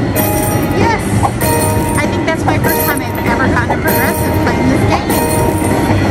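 Slot machine train-feature audio: a rail-car rumble with game music and chimes as train cars pass and the credit meter counts up.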